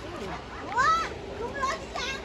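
People's voices talking, with a high-pitched exclamation about a second in.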